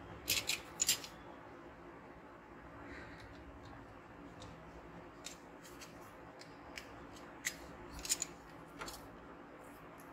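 A small plastic part being trimmed with a blade, making short, sharp snipping clicks: a quick cluster in the first second, then single clicks scattered through the second half.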